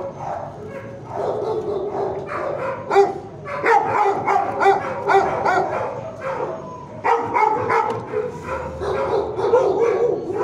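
Several dogs barking, the barks overlapping almost without pause, with a short lull about seven seconds in before the barking picks up again.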